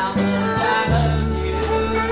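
Small country band playing live, with electric guitars over a steady bass line, in a gap between sung lines. The recording sounds dull, with its top end cut off.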